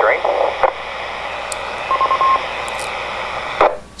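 Amateur radio transceiver's speaker hissing with steady receiver static, with a short beeping tone about two seconds in; the hiss cuts off abruptly just before the end.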